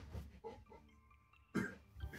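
A man coughs once, briefly, about one and a half seconds in.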